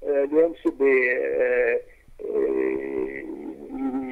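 A voice speaking in a radio broadcast recording, with long drawn-out vowels.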